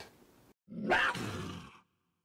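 A lion cub giving one short roar about halfway in, lasting about a second.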